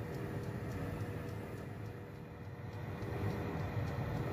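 A steady low hum with a faint hiss and a faint constant tone above it, dipping a little in the middle; no speech.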